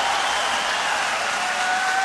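A large audience applauding: a steady, even clatter of many hands that runs unbroken for the whole pause.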